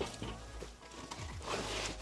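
Soft background music, with a light knock right at the start as a plastic-wrapped folded metal bed frame section is set against the wall, then faint handling noise from the packaging.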